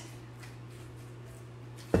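A low steady hum, then near the end a single sharp knock of a serving scoop against a mixing bowl while chicken enchilada filling is scooped between bowls.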